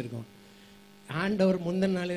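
A man speaking into a handheld microphone, with a steady electrical hum from the microphone's sound chain showing plainly in the second-long pause between his words.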